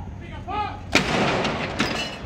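A field gun firing one blank round of a ceremonial gun salute: a single sharp boom about a second in, followed by a long rolling echo.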